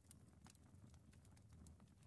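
Near silence: faint room tone with a low hum and a few scattered faint clicks.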